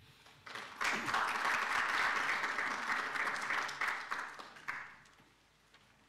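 Audience applauding, starting about half a second in and dying away after about four seconds.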